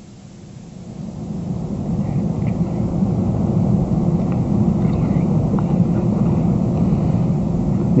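A steady low rumbling noise that swells over the first two to three seconds and then holds.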